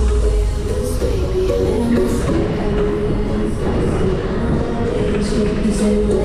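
Loud music from a fairground ride's sound system, over a steady low rumble of the Berg- und Talbahn cars running round the track.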